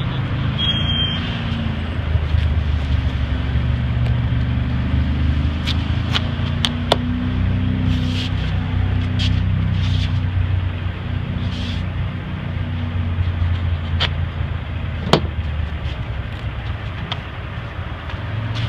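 Steady low rumble of a motor vehicle's engine running nearby, with a few short sharp clicks now and then.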